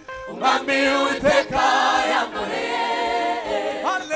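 Male lead vocalists and a choir singing a gospel song live through microphones, in phrases after a brief pause at the start.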